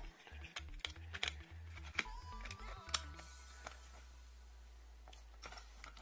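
Scattered small clicks and taps of fingers handling a TomTom GPS navigator's circuit board and plastic housing as the board is lifted out, frequent in the first three seconds and sparse after, over a faint low hum.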